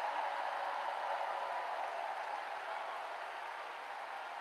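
Large arena crowd cheering and applauding, a steady roar that slowly fades.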